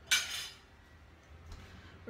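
A brief clatter of a metal kitchen utensil against cookware, just after the start and the loudest sound here, followed by faint handling.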